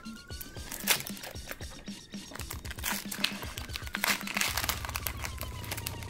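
Foil wrapper of a Pokémon booster pack crinkling and tearing as it is pulled open by hand, in many small crackles, over quiet background music with a regular beat.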